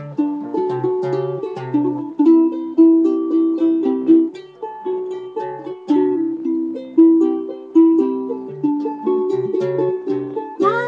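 An acoustic string instrument is picked in a steady run of plucked notes and chords, each note dying away quickly, with no singing over it.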